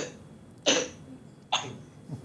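A young man coughing: three short, sharp coughs a little under a second apart.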